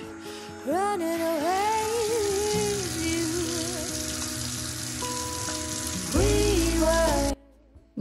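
Handheld shower head spraying water over a dog in a shower tray, a steady hiss of running water. Background music with a singing voice plays over it, and both stop abruptly near the end.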